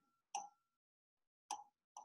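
Three faint, short clicks of keys being pressed on a computer while a decimal value is entered into a calculator emulator, the first alone and the last two half a second apart.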